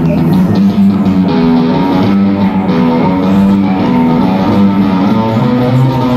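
Amplified guitar playing a steady, rhythmic passage of repeated chords.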